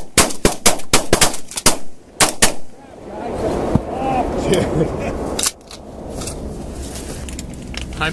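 A rapid volley of shotgun blasts from several hunters firing at once at ducks passing overhead, about a dozen shots packed into the first two and a half seconds, then stopping.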